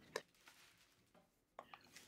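Near silence, with one faint short sound just after the start.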